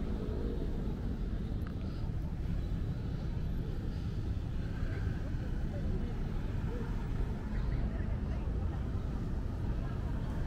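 Street ambience: a steady low rumble of road traffic, with people talking indistinctly in the background.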